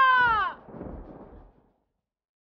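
A woman's long, loud anguished cry that falls in pitch and breaks off about half a second in. Faint background fades after it, then silence.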